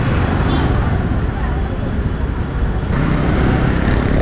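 Steady motorbike engine, road and street-traffic noise heard from the rider's seat while riding slowly through town traffic.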